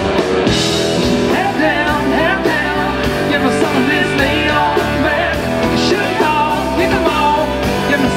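A live country-rock band playing: electric and acoustic guitars over bass and drums, with a bending lead melody line above a steady beat.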